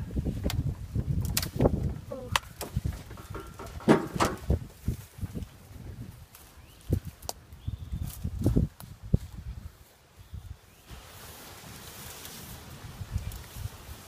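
Handling noise from a leafy tree branch carrying a bee swarm being moved: leaves rustling, with irregular knocks, clicks and low thumps, then a steady hiss over the last few seconds.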